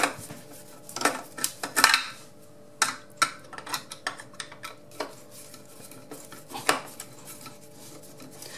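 A screwdriver undoing the fixing screws of a surface-mounted plastic plug-socket back box: scattered clicks, clinks and scrapes of the metal tip on the screws and plastic, with the loudest clatters in the first two seconds.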